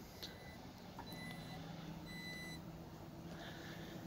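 Power liftgate of a 2019 Jeep Grand Cherokee opening: three short warning beeps about a second apart, and a faint steady motor hum from about a second in as the tailgate rises.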